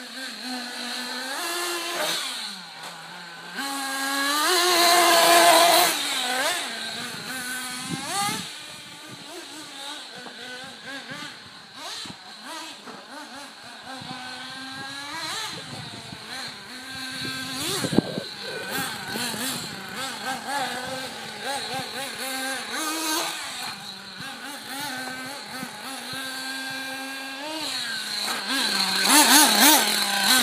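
Kyosho Inferno MP7.5 nitro RC buggy's small glow engine running and revving up and down as it laps, its pitch rising and falling with the throttle. It is loudest as it passes close about five seconds in and again near the end, with a single sharp knock about eighteen seconds in.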